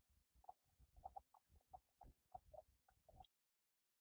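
Near silence with faint, irregular little scrapes and squelches from a hive tool being worked through wet slum gum and melted beeswax on a cloth filter. The sound cuts out completely a little after three seconds in.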